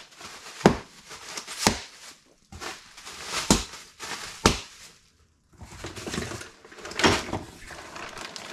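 Clear plastic wrap crinkling and rustling in irregular bursts as parts are unwrapped by hand from a cardboard box, with a brief pause about five seconds in.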